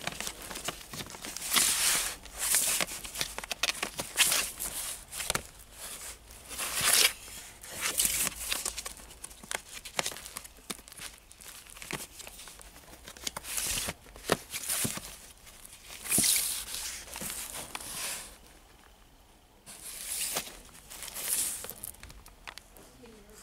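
Old cardboard LP record jackets being flipped through by hand, each one sliding and scraping against the next: a quick series of dry rasps, with a short lull near the end.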